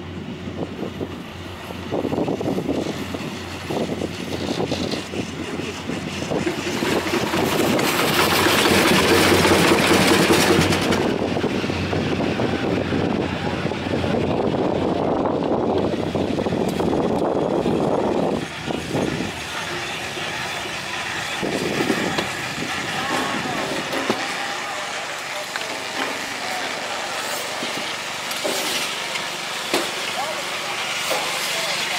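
Montaz Mautino basket lift running into a station, heard from inside a basket: a continuous mechanical running noise from the lift, loudest for a few seconds about a third of the way in and easing off in the second half, with people talking nearby.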